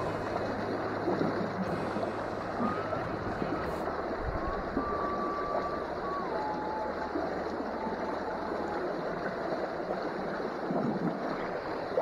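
Steady rush of a small stream's water running over and around a stone ledge, an even, unbroken sound.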